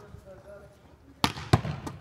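A volleyball bouncing off a wall and back into the hands in a wall-hitting drill: two sharp smacks about a third of a second apart near the end, with faint voices in the background.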